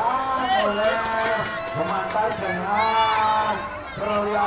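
Speech: men's voices talking and calling out, including one long drawn-out call near the end.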